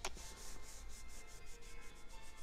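Hands rubbing together: a faint, fast, even swishing of palm against palm, several strokes a second.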